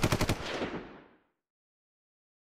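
A rapid burst of sharp cracks, like machine-gun fire, starting suddenly and dying away within about a second.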